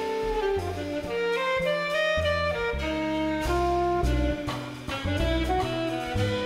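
Big band jazz ensemble playing, the saxophones to the fore over brass, bass and drums, with held chords that change every half second or so over a moving bass line.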